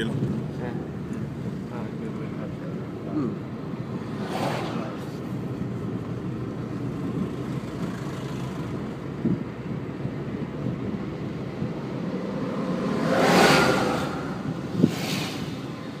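Steady engine and road noise heard from inside a slowly moving car. A louder rushing swell builds and fades about thirteen seconds in, and a single sharp knock follows just after.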